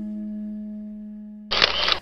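A held low musical tone with overtones, like a singing bowl, fading slowly. About one and a half seconds in, it is cut off by a short, loud burst of noise.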